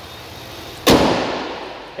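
Pickup truck hood slammed shut: one loud, sharp metal bang about a second in, ringing out over the following second.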